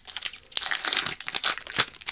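The foil-lined wrapper of a 2019 Upper Deck Goodwin Champions hobby pack being ripped open and crinkled in the hands: a dense, irregular run of sharp crackles.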